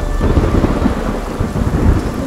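Thunder rumbling over heavy, steady rain.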